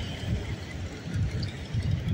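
Street background noise: a low, uneven rumble with no distinct event standing out.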